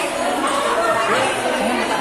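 Background chatter of many people talking at once, with voices overlapping and none standing out.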